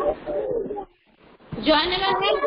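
Voices over a video call, a short pause, then a woman's voice starting a chanted prayer about one and a half seconds in.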